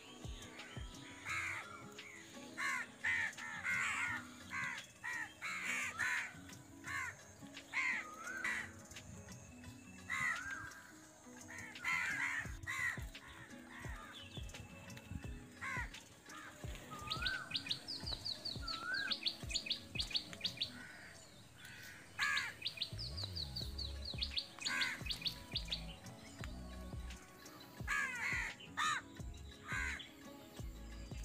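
Many birds calling and chirping in garden trees. In the second half there are two runs of fast, high ticking calls, each about three seconds long. A few low thumps come near the end.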